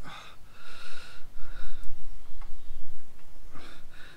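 A man breathing audibly close to the microphone: two or three breathy puffs in the first two seconds, with a faint click a little later.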